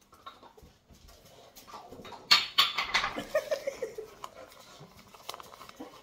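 Excited pet dogs whining and yipping, loudest a little over two seconds in, followed by short whines that fall in pitch.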